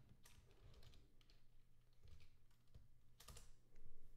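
Faint keystrokes on a computer keyboard as a password is typed, with a louder key click a little past three seconds in.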